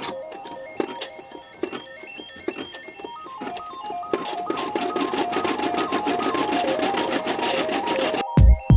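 Brother SE-400 computerized embroidery machine starting its stitching run, the needle clattering rapidly, under background music with a stepping melody.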